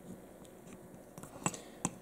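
A few faint, short clicks of metal parts of a disassembled 1911 pistol being handled, coming in the second half.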